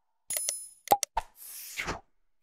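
Subscribe-button animation sound effects: a short bell-like ding, then a few quick clicking pops, then a whoosh that swells near the end.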